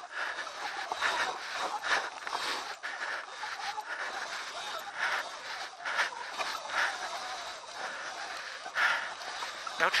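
A rider breathing hard, in short loud breaths about once a second, during a steep climb on an electric dirt bike, over a steady hiss of wind and trail noise.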